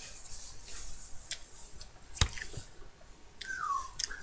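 Pencil writing on paper: faint scratching with a few sharp taps, the loudest a little past two seconds in. A short falling tone near the end.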